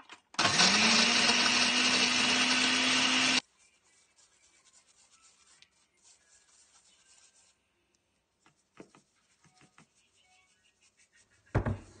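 A countertop blender runs for about three seconds, grinding biscuits into crumbs: its motor spins up with a rising whine, holds steady, then cuts off suddenly. Faint scraping follows as the crumbs are rubbed through a metal mesh strainer, and a single thump comes near the end.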